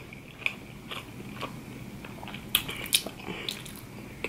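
Close-miked chewing of sushi rolls: soft wet mouth sounds with scattered sharp clicks, the loudest two about two and a half and three seconds in.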